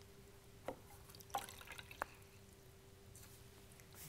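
Near silence with a faint steady hum. A few soft, light ticks come about two-thirds of a second, one and a half seconds and two seconds in.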